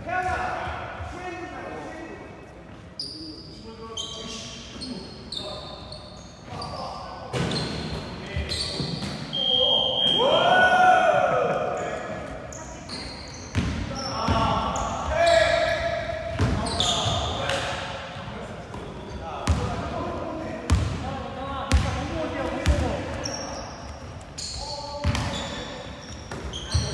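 A basketball bouncing on a hardwood gym floor, the thuds echoing in a large hall, mixed with players' shouts. One loud, drawn-out shout rises and falls about ten seconds in.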